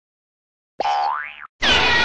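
Cartoon sound effects: about a second in, a short effect that glides quickly upward in pitch, and near the end a louder effect starts with several falling tones over a steady low hum.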